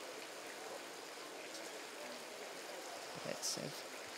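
Steady, even hiss of running water from the diving pool, with one brief word of commentary near the end.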